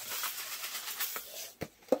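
Worm grit sprinkled from a container onto crumpled newspaper bedding in a plastic tote: a steady hiss of falling grains that fades out, followed by a few light knocks near the end.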